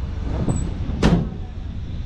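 The steel cab door of a 1941 GMC truck shut once, a single solid slam about a second in, over a steady low rumble.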